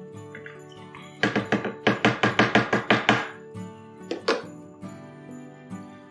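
A long metal spoon knocking rapidly against the wall of a plastic fermenting bucket as the must is stirred, about six knocks a second for two seconds, then two more clacks a moment later. Background music plays throughout.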